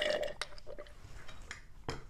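A woman's short burp at the start, followed by a few faint clicks, the sharpest near the end.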